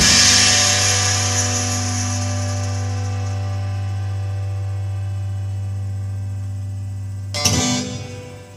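A band's final chord ringing out: acoustic guitar with a cymbal wash after the last hit, fading slowly over about seven seconds. Near the end a brief louder burst of sound comes in and fades.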